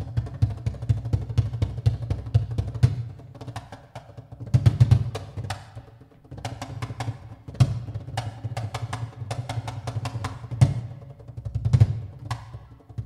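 Percussion-led passage of a live Afro-Peruvian jazz performance: a cajón and a drum kit play a busy groove of quick sharp strokes over deep thuds, with heavy accented hits every few seconds.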